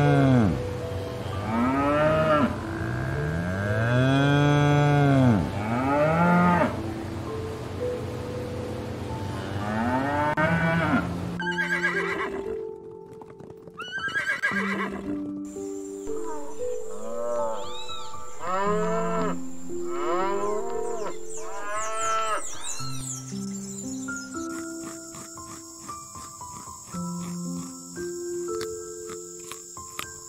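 African buffalo lowing: a run of long moo-like calls, each rising and falling, about every two seconds through the first ten seconds or so. After that, background music with a stepped melody takes over, with more rising-and-falling calls mixed in and a thin high steady tone in the second half.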